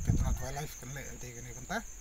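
A steady high-pitched insect drone, like crickets chirring, runs behind a man talking.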